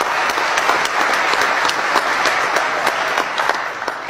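Conference audience applauding, a dense, steady patter of many hands clapping that dies away just before the end.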